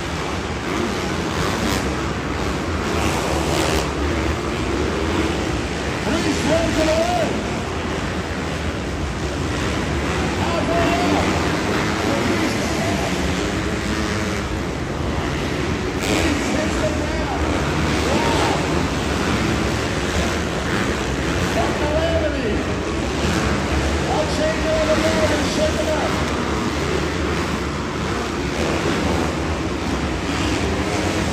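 Several motocross bikes racing on an indoor dirt track: a continuous loud wash of engine noise, with short rising and falling revs as riders accelerate and back off.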